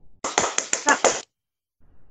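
Quick flamenco-style hand clapping: about seven sharp claps in rapid succession over roughly a second, then stopping.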